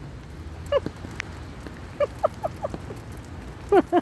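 Steady rain, with a woman's short bursts of soft laughter: a quick run of chuckles about two seconds in and more laughter starting near the end.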